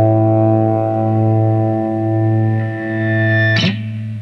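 A rock band's final chord held and ringing out on distorted electric guitar with a strong low note. A sharp hit near the end marks the song's last stop, and the sound then falls away.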